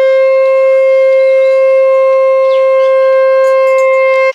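Conch shell (shankha) blown in one long, loud, steady note of a single pitch, held without a break for the ritual blessing.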